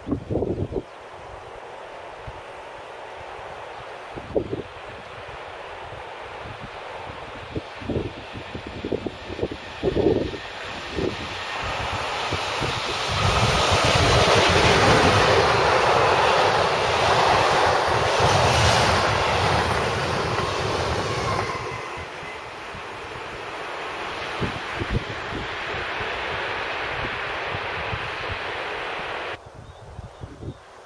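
Electric freight train of hopper wagons rolling past, hauled by an SNCF BB 27000-series locomotive. The rolling noise of wheels on rail builds, is loudest mid-way as the wagons go by close, then continues steadily and cuts off abruptly near the end. A few short low thumps come in the first ten seconds.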